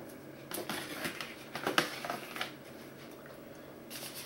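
Cardboard craft-kit pieces and plastic packaging handled and set down on a table: a scatter of light taps and rustles, mostly in the first half.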